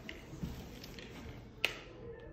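A single sharp click about a second and a half in, over faint rustling as a dog shifts and rolls on a carpeted floor.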